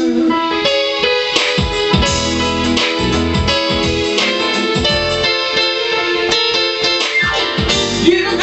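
Piano-sounding keyboard playing an instrumental passage of held chords over low bass notes, with no singing.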